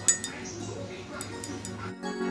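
A paintbrush clinking against the rim of a ceramic water mug while being rinsed: one sharp clink just after the start, then a few lighter ticks later, over soft background music.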